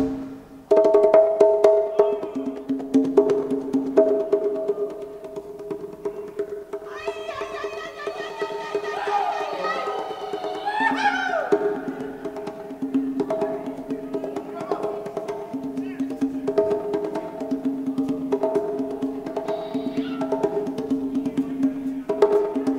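A live band playing softly in a percussion-led passage: light, quick clicking percussion over a held chord that stops and restarts in a rhythm, with pitches that slide up and down about halfway through.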